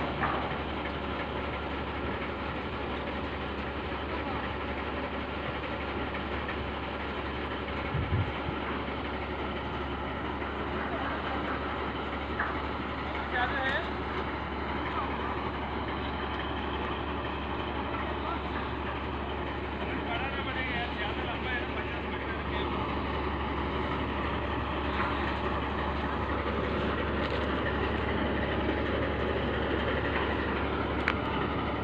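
Mobile crane's diesel engine running steadily, a constant low hum under an even mechanical noise, with a short knock about eight seconds in.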